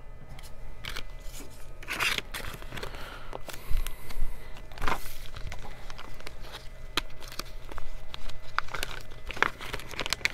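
Clear plastic parts bags crinkling and rustling as they are handled and opened. It is a run of irregular crackles, with louder rustles about two seconds in, at five seconds and near the end.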